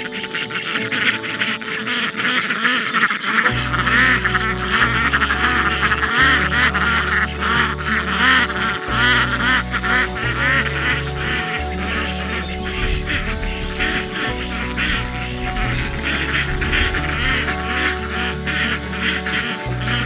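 A flock of ducks quacking busily and continuously, over background music whose bass comes in about three and a half seconds in.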